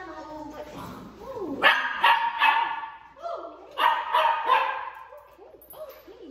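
Puppies barking in play: two bursts of high-pitched barks and yips, one about one and a half seconds in and another around four seconds, with softer whining between.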